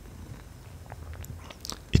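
A quiet pause: a low steady hum with a few faint, short clicks in the second half, and a man's voice starting at the very end.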